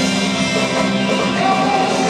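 Rock band playing live with electric guitars and drums, heard from the seats of a large arena.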